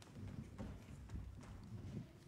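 Faint, irregular footsteps and shuffling of children moving into place on a wooden stage floor, with scattered light knocks.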